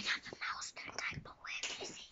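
A child whispering softly: short, breathy, unvoiced bits of speech.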